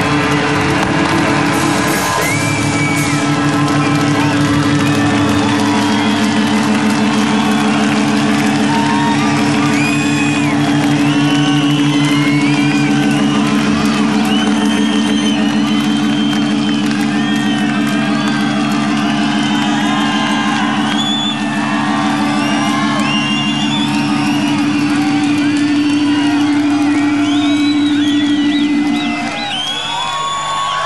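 A live rock band holds one loud distorted chord over a fast pulsing beat at a song's close, while a large crowd cheers, whoops and whistles over it. The chord cuts off near the end.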